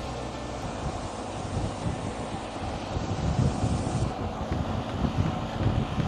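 Wind rushing over a microphone on a bicycle riding at road speed in a motorpace line, with low gusty buffeting that grows stronger about halfway through.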